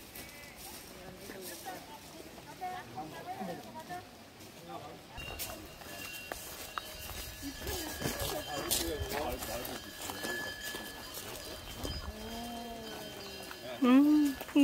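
Temple eave wind bell (pungyeong) struck by its clapper several times from about five seconds in, its metallic tones ringing on between strikes, over people chatting.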